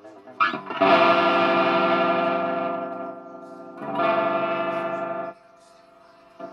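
Electric guitar through a Jose-modded EVH 5150 III LBX amp head, played with heavy distortion: a brief rising slide, then a sustained chord that rings out and fades, and a second chord that is cut off sharply near the end.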